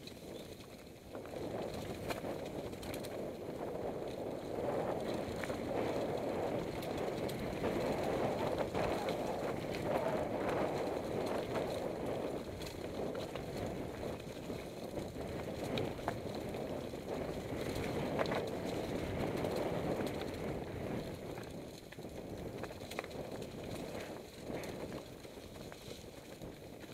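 Mountain bike riding down a rocky, leaf-covered singletrack: a steady rush of tyres rolling over stones and dry leaves, with frequent sharp knocks and rattles from the bike. It gets louder about a second in and eases a little near the end.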